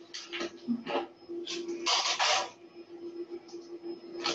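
Handling noises from a metal springform cake pan and oven mitts on a countertop: a few short scrapes and rustles, the longest about two seconds in, over a steady low hum.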